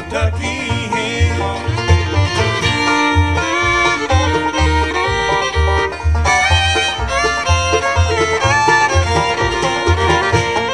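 Acoustic bluegrass band playing an instrumental break with fiddle, banjo, acoustic guitar and upright bass, the bass walking steadily underneath. The fiddle takes the lead partway through.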